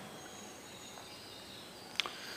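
Faint background noise with thin, high, steady insect calls, and one short click near the end.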